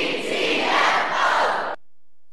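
A crowd shouting and cheering, which cuts off abruptly near the end.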